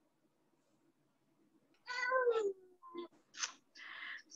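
A domestic cat meowing once about two seconds in, a single call falling in pitch, followed by a few short faint noises.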